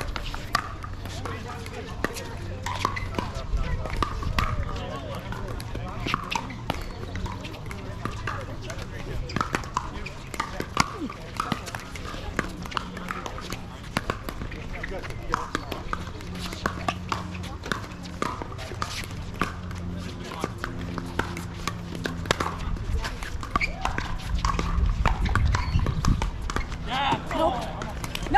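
Repeated sharp pops of hard paddles striking a plastic pickleball, coming irregularly through a rally, with voices chattering in the background.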